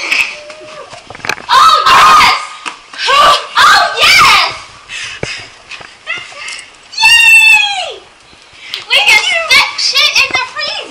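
Young women laughing and shrieking in bursts, with one long high squeal about seven seconds in that falls in pitch.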